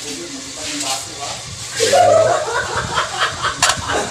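People's voices over a steady hiss, with one voice louder about two seconds in.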